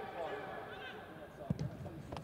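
Quiet pitch-level sound of a football match in an empty stadium: faint distant shouts from players, then one sharp thud of a ball being struck about one and a half seconds in, followed by a couple of lighter knocks.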